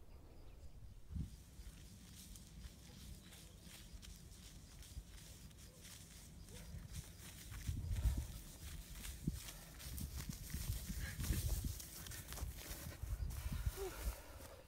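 A person running down a hill through tall grass: irregular footfall thuds and the swish of grass against the legs, louder from about halfway as the runner comes closer.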